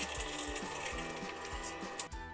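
Steady scratchy rubbing of a hand smoothing a laminate sheet down onto a board, over background music with an even beat.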